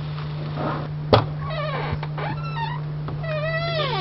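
A sharp click about a second in, then a cat meowing three times; the last meow is the longest and slides down in pitch at its end. A steady low hum runs underneath.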